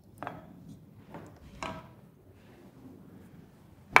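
Wooden spoon scraping and stirring through thick cooked tapioca in a copper saucepan, fishing out the lemon peel and cinnamon stick: a few soft scrapes in the first couple of seconds.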